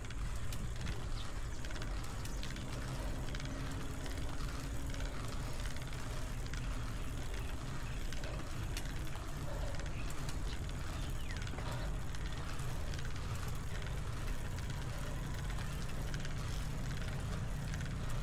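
Steady low wind rumble on an action-camera microphone, with tyre and road noise from a road bike climbing slowly.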